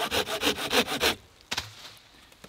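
Felco 600 folding pull saw cutting through a thin wooden branch in quick, short strokes, about five a second. The sawing stops suddenly a little past a second in as the branch is cut through, followed by a single light knock.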